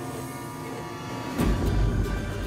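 Background music with steady held tones; about one and a half seconds in, a deep rumble comes in suddenly as a gas burner under a copper pot still is lit with a hand-held propane torch.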